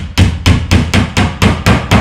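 Hammer driving a small nail through the corner of a thin fibreboard panel into a chipboard edge of an IKEA Malm chest: a quick run of about nine even blows, roughly four to five a second.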